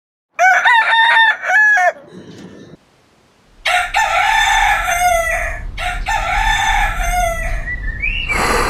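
A rooster crowing three times: a short call broken into syllables at the start, then two long calls that each drop in pitch at the end.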